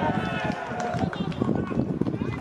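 Footballers shouting out on the pitch: a drawn-out call that rises and falls in pitch during the first second, then fainter shouts.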